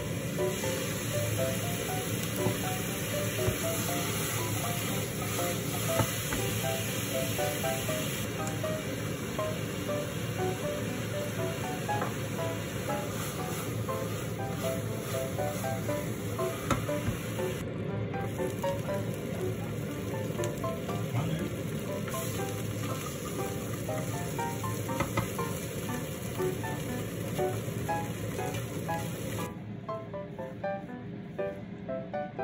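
Light background music over the steady sizzle of sliced shiitake and wood ear mushrooms frying with soy sauce and sugar in a nonstick pan. The sizzle stops just before the end.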